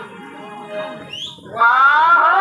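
A loud voice with a sliding pitch comes in about one and a half seconds in. Before it there is a quieter stretch with a short, rising whistle-like glide.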